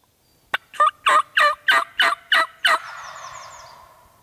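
Wild turkey calling: a series of about seven loud, clipped notes, roughly three a second, then a sound that trails off over about a second.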